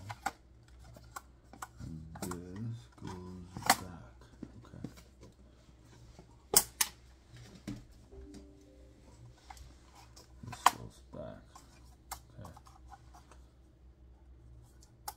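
Sharp plastic clicks and snaps, with handling rubs, as the folding arms and propellers of a DJI Mavic 3 drone are swung open and handled. The loudest clicks come about four, six and a half, and ten and a half seconds in. A short murmured voice comes a couple of seconds in.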